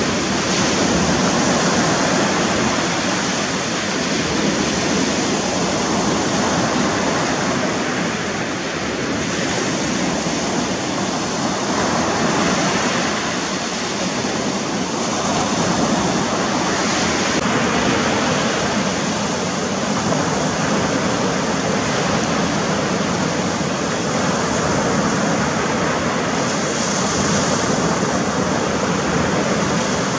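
Black Sea surf breaking and washing up a sandy beach: a continuous rushing wash that swells and eases slightly with each wave.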